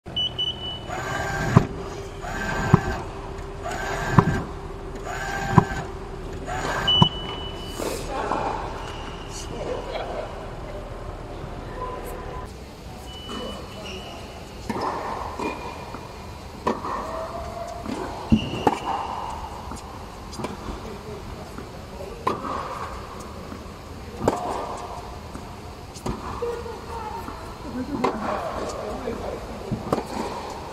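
Tennis balls being struck by a racket during ball-machine practice. Five sharp hits come about a second and a half apart in the first seven seconds, then a few scattered hits with voices in between.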